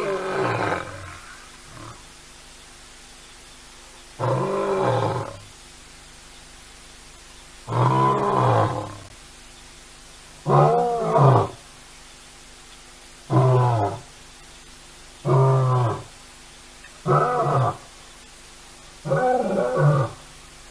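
Young male lion roaring, about eight roars in a row. The first roars last over a second and come about 4 s apart. Later ones are shorter and closer together, about 2 s apart near the end.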